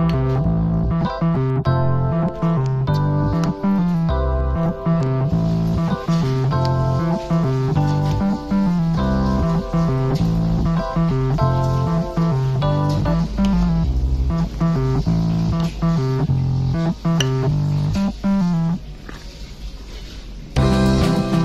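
Instrumental background music led by guitar and bass, with a steady beat; it drops quieter just before the end.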